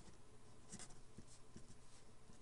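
Felt-tip marker writing on paper: a few faint, short scratching strokes as a word is written, the strongest a little under a second in.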